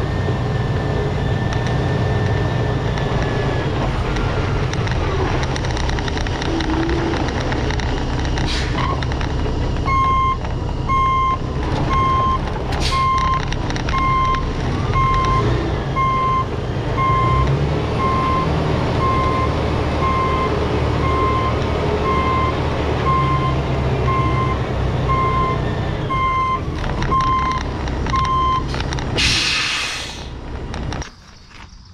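Semi-truck tractor's diesel engine running while the truck moves, its backup alarm beeping at one steady pitch a little faster than once a second from about ten seconds in. Near the end comes a short, loud hiss of air from the air brakes.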